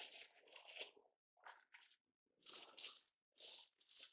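Plastic wrap crinkling in four bursts as it is pulled open and peeled back from a wrapped loaf.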